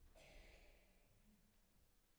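Near silence: concert hall room tone, with one faint breath-like rush lasting under a second near the start.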